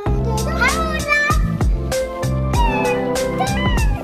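Background music: a song with a steady beat, bass and a singing voice.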